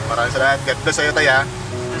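Voices talking over background music, with a low steady hum from the stopped car underneath.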